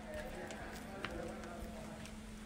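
Faint voices of people talking, with two light clicks about half a second and a second in, over a steady low hum.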